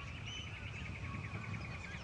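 Birds chirping: a fast, even run of repeated high chirps with a few short whistled notes over it, and a low rumble underneath.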